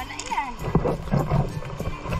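Shallow stream water running over rocks, with a string of short knocks and clatters from a plastic bucket being handled, starting about a second in. A brief melodic phrase of background music sounds at the start.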